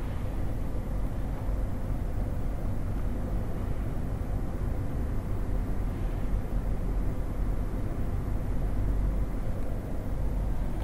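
Steady low background rumble with a faint steady hum, unchanged throughout.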